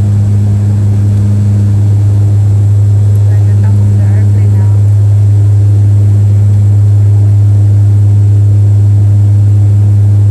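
Passenger aircraft's engines heard inside the cabin on approach to landing: a loud, steady low drone that holds unchanged throughout.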